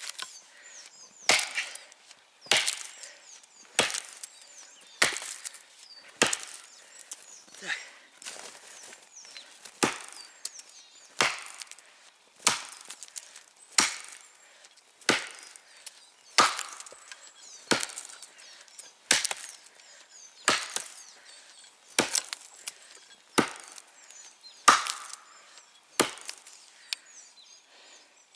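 Heavy forged felling axe (the 1850 g Марал 2 on a 75 cm handle) chopping into a standing tree trunk, with steady, evenly spaced strikes about one every 1.3 seconds, some twenty in all, stopping about two seconds before the end. Each blow bites wood with a splintering crack as a felling notch is cut into one side of the tree.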